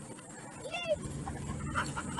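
Dog giving one short, arched whine about three-quarters of a second in, over steady outdoor wind and ambient noise.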